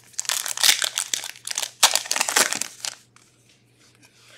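A foil Upper Deck Artifacts hockey-card pack being torn open and its wrapper crinkled. It makes a dense crackle for about three seconds, then stops.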